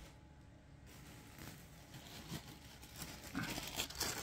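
Faint crinkling of a clear plastic bag holding skeins of yarn as it is handled, a few soft rustles that grow louder in the last second.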